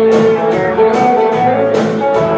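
Live band playing: guitars over a steady drum beat, the music loud and continuous.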